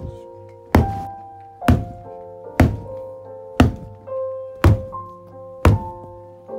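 Piano music playing, cut through by a loud, sharp thunk about once a second, six in all, from a wooden baseball bat struck repeatedly against a bed.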